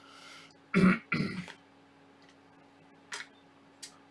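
A person coughs twice in quick succession, clearing the throat about a second in, after a short breath. Two light clicks follow near the end.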